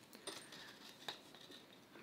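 Near silence with a few faint clicks from hands handling a speed stitcher sewing awl on a strap of webbing.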